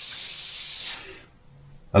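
Dual-action airbrush hissing as it sprays, the trigger drawn back only slightly so that only a little paint comes out. The hiss cuts off about a second in as the trigger is released.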